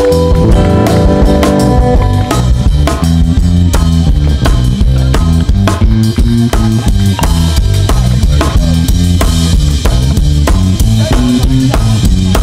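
Live band playing an upbeat song: a drum kit beat with bass drum and snare hits over a stepping bass line, with guitars.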